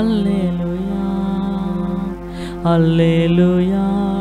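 A man singing long, drawn-out notes into a microphone over sustained electronic keyboard chords. His voice slides up into a phrase at the start and begins another a little past halfway.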